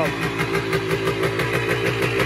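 Yamaha DT250 single-cylinder two-stroke engine idling steadily at a raised speed. The high idle persists with the choke off, a new fault the owner is setting out to diagnose.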